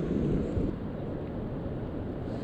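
Steady low rumble of wind buffeting the chest-mounted camera's microphone.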